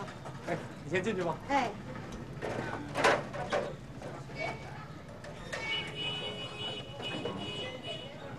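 A few words of speech over street background noise. About three seconds in there is a single sharp clack, and near the end a steady high tone joins.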